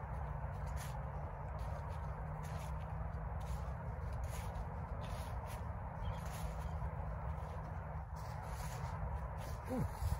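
Footsteps on a path covered in dry fallen leaves, about one or two a second, over a steady outdoor background noise.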